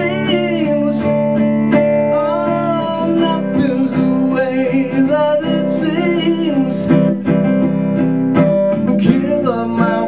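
A live solo rock song: a guitar strummed through an instrumental stretch between verses, with a singing voice coming in at times.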